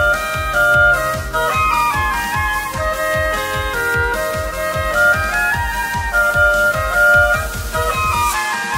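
Oboe playing a pop melody over an electronic backing track with a steady kick-drum beat.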